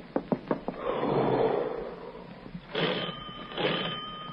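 Radio-drama sound effects: a quick run of sharp clicks, a rush of noise, then a doorbell rung twice in short bursts, its tone ringing on after.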